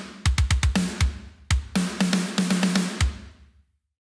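Sampled drum kit (Unwavering Studios Saudade kit) triggered from MIDI, playing a programmed tom fill: a quick run of strikes alternating between a higher and a lower tom. The last hit comes about three seconds in and rings out.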